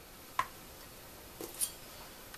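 A few light clicks, one about half a second in and a softer pair about a second later, over quiet room tone.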